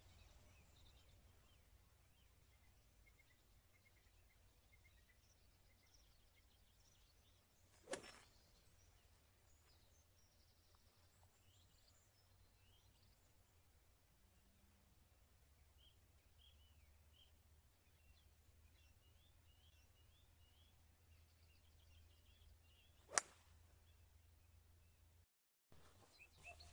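Near silence with faint birdsong, broken by a sharp crack near the end: a 22-degree hybrid striking a golf ball off the tee. A fainter single knock comes about eight seconds in.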